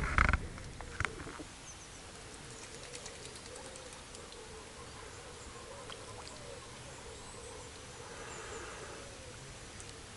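Quiet lakeside ambience with faint, soft, low calls from a small group of ducks on the water. A single click comes about a second in.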